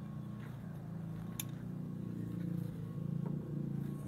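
A steady low mechanical hum, with a single sharp click about a second and a half in.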